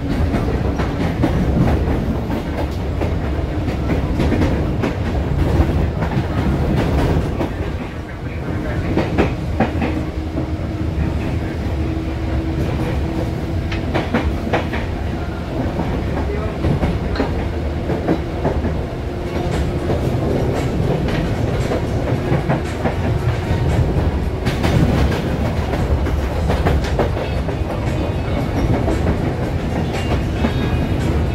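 Inside a moving electric commuter train: the steady rumble of the carriage, with the clickety-clack of wheels running over rail joints.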